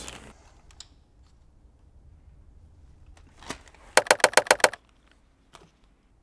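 A quick run of about eight sharp, ringing metallic clicks lasting under a second, after a few single clicks.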